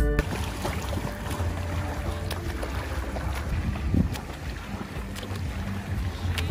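Wind rumbling on the microphone beside an outdoor swimming pool, a steady rushing noise, with faint light splashing from a swimmer's strokes.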